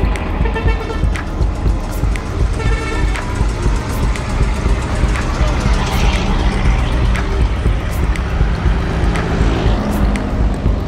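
Road traffic and wind rumble on a moving bike-mounted action camera, with a truck passing on the highway about six seconds in, under background music.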